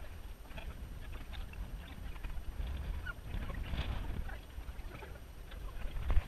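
Wind rumbling on a body-worn camera's microphone in an open field, with faint, scattered short sounds and calls from the surrounding course.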